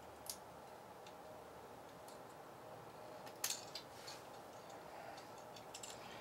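Faint room hum with a few scattered small clicks, the loudest cluster about three and a half seconds in and a few more near the end.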